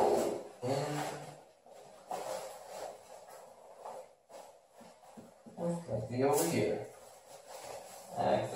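Quiet handling noise of motorcycle gear being worked on by hand, with a short crackle about six seconds in. Two brief murmured vocal sounds, about a second in and about six seconds in.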